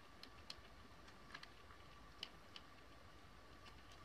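Near silence with a handful of faint, scattered clicks as a hot glue gun's trigger is squeezed to lay glue on fabric.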